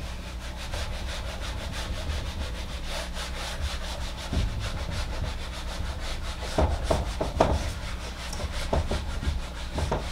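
A felt whiteboard eraser wiping a whiteboard in quick, even back-and-forth strokes, with a few soft knocks in the second half.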